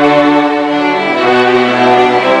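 A string section with violins and cellos playing sustained chords that change to a new chord about a second in.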